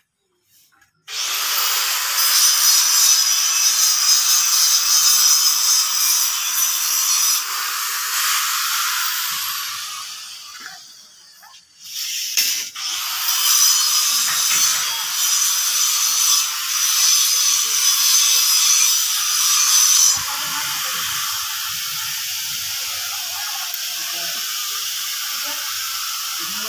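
A power tool running with a loud, high-pitched hiss that starts suddenly about a second in, stops around ten seconds in and starts again a couple of seconds later, then carries on more quietly from about twenty seconds on.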